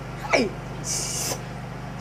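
A woman's short vocal sound, falling in pitch, followed by a brief hiss, over a faint steady low hum.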